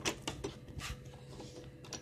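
Handling noise of a phone being carried: a few scattered light clicks and knocks over a faint steady hum.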